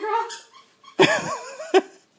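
Short high-pitched wavering vocal sounds, three in all: one at the start, a longer one about a second in, and a brief one near the end, with short quiet gaps between.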